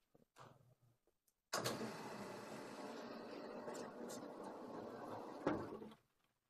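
A sliding lecture-hall blackboard panel rolling along its track for about four seconds, starting suddenly and ending with a thump as it hits its stop.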